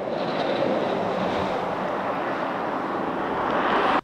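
Steady rushing outdoor location noise under roadside footage of a crashed car, with no clear pitch or rhythm, cutting off abruptly at the end.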